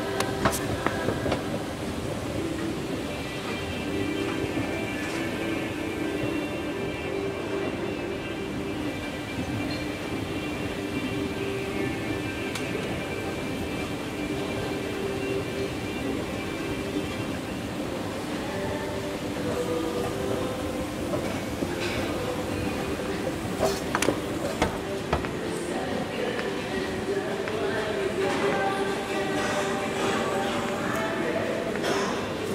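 O&K escalator running, a steady mechanical drone and rattle from the moving steps, with a few sharp clicks near the end.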